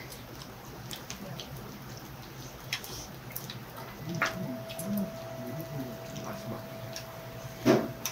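Close eating sounds: chewing and mouth noises with light clicks of metal chopsticks against a small ceramic sauce dish, and a few low murmured "mm"s. A louder knock sounds near the end, and a faint steady hum sets in about halfway.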